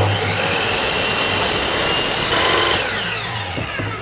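Mitre saw starting and crosscutting the end of a pine cladding board square. About two and a half seconds in, the blade is let go and winds down with a falling whine.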